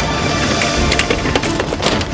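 A rapid run of sharp clattering cracks that gets thicker about a second in and is loudest near the end, with background music underneath.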